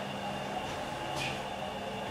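Steady hum and rumble inside a Schindler 330A hydraulic elevator car, with a low steady tone under it and a faint brief squeak just past a second in.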